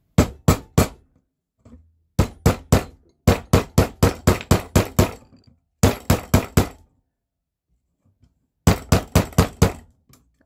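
Small metal hammer striking the balled end of a brass wire seated in a steel drill gauge, flattening it into a rivet head. Sharp metallic blows come in five quick bursts of three to ten strikes, with short pauses between.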